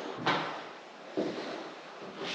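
Footsteps on bare wooden floorboards in an empty room: two heavy steps about a second apart, the first sharper.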